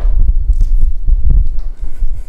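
Microphone handling noise: a live microphone being picked up and moved about, giving a run of deep thuds and rumble.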